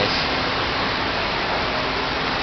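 Steady, even hiss of indoor mall background noise, with a faint low hum underneath.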